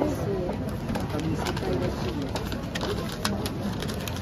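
Wrapping paper rustling and crinkling in short sharp bursts as it is folded and creased by hand around a gift box.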